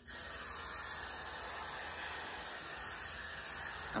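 Got2b Glued aerosol hairspray being sprayed onto hair in one long, steady hiss, after a brief break right at the start.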